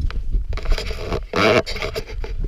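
Scraping and crunching of footsteps on a dry, gritty dirt trail, with low rumble and rubbing on a body-worn camera's microphone. A brief voice sound is heard about a second and a half in.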